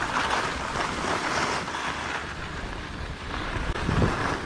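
Skis hissing and scraping over packed snow, swelling and fading with each turn, with wind buffeting the microphone.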